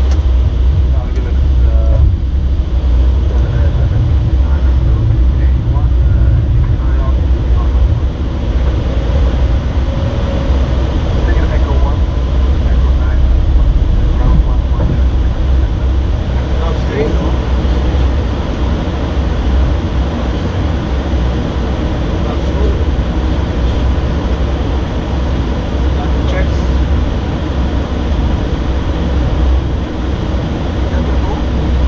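Steady, loud low rumble of airflow and engine noise inside an Airbus airliner's cockpit during the approach to landing.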